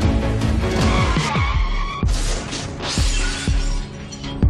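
Programme theme music with a steady beat, overlaid by a tyre-screech sound effect about a second in and then a car-crash sound effect with smashing glass that lasts about a second.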